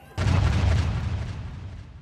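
A sudden deep boom about a fifth of a second in, its rumbling tail fading slowly, as in a news channel's closing sound effect.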